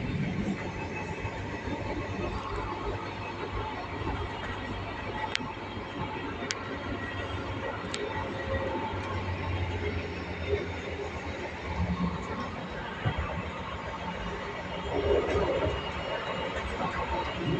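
Passenger train running, heard from inside the carriage: a steady low rumble of wheels and running gear on the track, with a few faint ticks.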